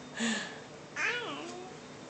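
A child's high-pitched, meow-like squeal, pitch rising and falling, about a second in, after a short breathy syllable near the start: a voice made up for the baby doll.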